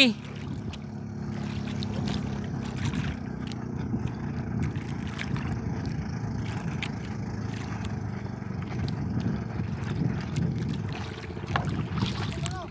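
A small fishing boat's engine running steadily, a low, even hum.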